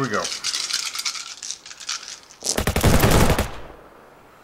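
A handful of six-sided dice shaken and rattled in a hand, then thrown: about two and a half seconds in comes a loud, rapid clatter of many dice hitting and tumbling across the gaming table, lasting about a second.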